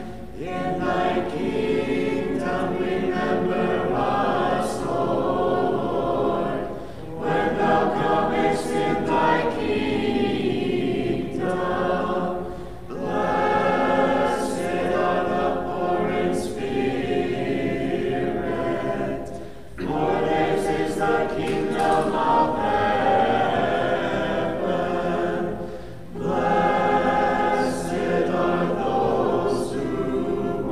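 Orthodox church choir singing unaccompanied liturgical chant in several parts, in sustained phrases of five to seven seconds with brief pauses between them.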